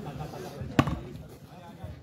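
A volleyball struck hard by hand once, a single sharp slap about a second in, with faint voices of players and onlookers behind it.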